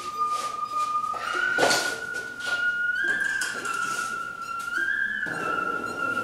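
A high, whistle-like tone plays a slow melody of long held notes that step up and down in pitch, with no breaks. A knock comes about one and a half seconds in, with a few softer knocks.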